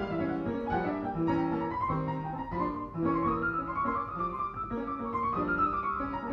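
Acoustic grand piano played solo in a jazz improvisation: held left-hand chords under a right-hand line that winds up and down within a narrow range.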